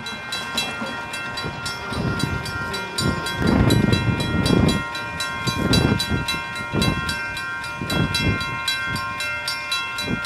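Railroad grade crossing bell ringing in rapid, evenly spaced strikes while the crossing signals are active. Low rumbles swell and fade several times underneath it.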